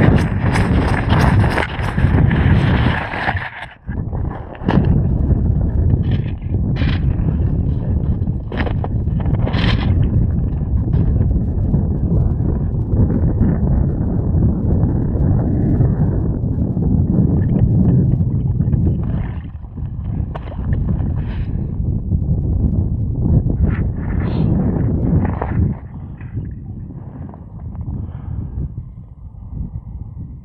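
Wind buffeting an outdoor camera microphone, a steady low rumble with scattered knocks and clicks from handling, a brief dropout a few seconds in, and a quieter stretch near the end.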